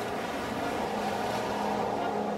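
Steady rush of ocean surf breaking on a beach, with a faint low held tone underneath.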